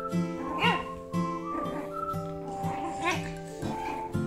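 Background music with a steady melody, over which a puppy gives two short, high yelps that rise and fall in pitch, about half a second in and again about three seconds in; the first is the loudest sound.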